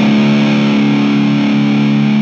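Electric guitar playing long sustained notes, with a lower note changing a couple of times underneath.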